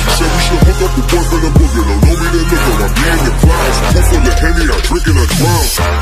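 Hip hop track with a rapped vocal over deep bass and a low kick drum that drops in pitch on each hit.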